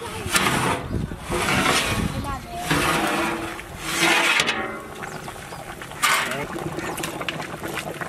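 Large metal lid scraping and sliding across the rim of a big aluminium cooking pot as it is pulled off, in several noisy scrapes through the first half, with another near the end. Voices murmur in the background.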